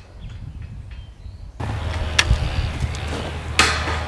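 Two sharp knocks from work on a metal fence gate, the second one longer, over a steady low hum that comes in suddenly about one and a half seconds in.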